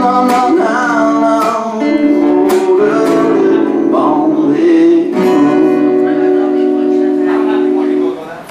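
Steel-string acoustic guitar strummed, with a man singing over it. From about five seconds in, a chord and a sung note are held steady until they stop at the end.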